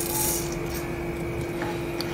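Urad dal poured into hot oil in a pan: a brief rush of grains landing at the start, then a steady sizzle as the dal fries.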